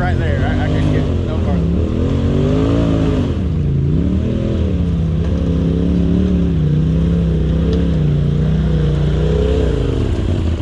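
Side-by-side UTV engine working up a steep rutted dirt climb, its revs rising and falling about once a second as the throttle is worked, then holding nearly steady for the second half. A steady low engine hum runs underneath.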